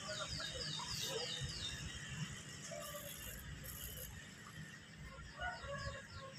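Faint bird calls: a quick run of short, high, falling chirps, about three a second, at the start and again near the end.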